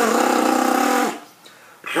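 Trombone mouthpiece buzzed on its own with a flutter tongue: a held buzzing pitch with the rolled tongue chopping it into a rapid rattle, about a second long. After a brief break a second flutter-tongued buzz starts near the end.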